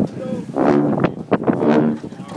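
Sousaphones sounding short, low held notes in two blasts, mixed with people shouting and cheering.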